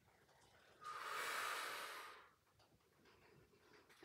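A woman's single long breath out, starting about a second in and lasting about a second and a half.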